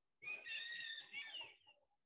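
A bird singing: a faint, wavering run of high whistled notes lasting about a second and a half.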